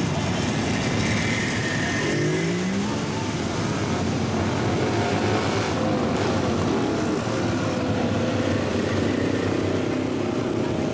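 Vintage motorcycle engines running in a busy outdoor mix, with one engine revving up in rising pitch about two seconds in.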